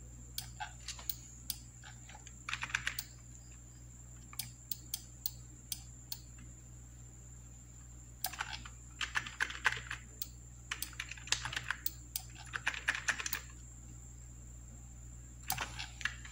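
Computer mouse and keyboard clicks: scattered single clicks, then several quick runs of clicking, over a faint steady high whine.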